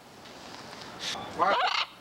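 A macaw calling: a short hoarse squawk about a second in, then a louder, wavering call near the end.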